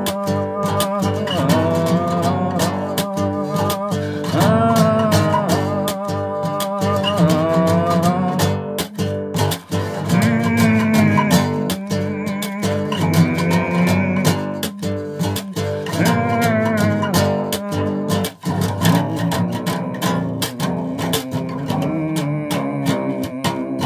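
Bass guitar played fingerstyle, a continuous line of plucked notes.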